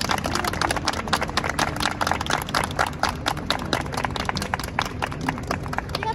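Applause from a small street audience: many irregular hand claps over low city background noise.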